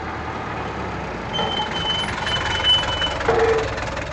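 Steady car engine and road rumble heard from inside a moving taxi. About a second in, a high beeping tone starts and runs, broken once, for nearly two seconds, followed by a short lower tone.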